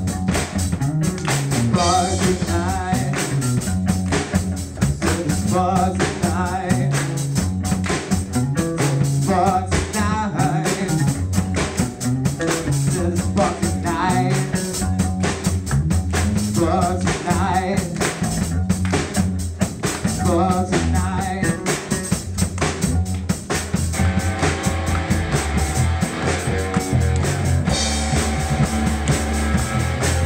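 Live rock band playing an instrumental section: electric bass carrying a moving line with drum kit and electric guitar lines over it. About 24 seconds in, the band thickens into a fuller, steadier sound.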